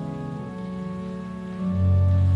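Church organ playing slow, held chords. The chord shifts about half a second in, and a loud low bass note comes in near the end.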